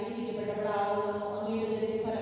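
A group of voices chanting together in unison, holding long steady notes and moving to a new note about half a second in.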